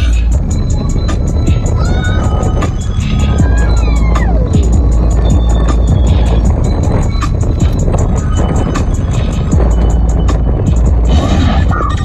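A song with a heavy bass beat and fast, evenly spaced hi-hat ticks, playing loudly on the car radio inside the cabin. A falling synth-like glide comes about four seconds in.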